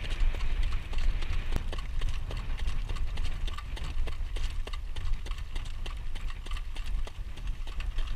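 Harness horse's hooves clip-clopping in quick succession on pavement as it pulls a jog cart, over a steady low rumble.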